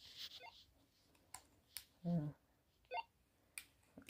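Hunicom handheld walkie-talkies being switched on and handled: a few sharp button clicks and two short electronic beeps, one about half a second in and one near three seconds in.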